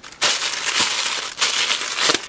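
Grey plastic poly mailer bag crinkling loudly as hands grab and squeeze it to open it. It starts about a quarter-second in.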